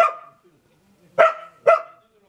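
A dog barking twice, two short sharp barks about half a second apart, a little over a second in.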